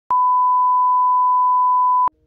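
Television test-card tone: one steady, high, pure beep held for about two seconds, cutting in and off abruptly with a click.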